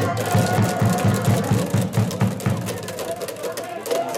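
Baseball cheering section clapping in rhythm over a steady low drum beat, about four beats a second, with voices. The beat stops about two and a half seconds in, leaving crowd voices.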